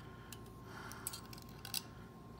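Faint, scattered small clicks and scrapes of a bayonet's steel tip working against an HK 33/93 magazine's floor-plate locking plate and spring as it is pried loose.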